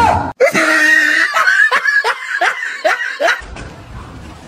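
A person laughing in a quick run of short pulses, about three a second, that stops abruptly shortly before the end.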